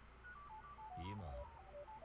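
Faint retro video-game 'game over' jingle: a run of short electronic beeps stepping downward in pitch, with a faint voice about a second in.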